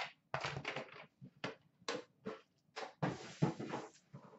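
Hands handling a metal trading-card tin: a string of short knocks, scrapes and rustles, with a longer scraping rustle about three seconds in.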